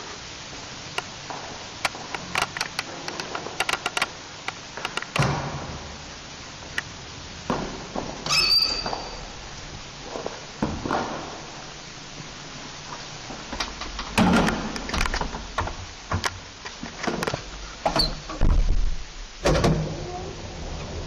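Small ASEA elevator with an OTIS modernisation: clicks and knocks of the swing landing door and the car's folding doors, with heavier thunks as the doors close. There is a short electronic beep about eight seconds in, and from about thirteen seconds a low hum comes up under further door thunks.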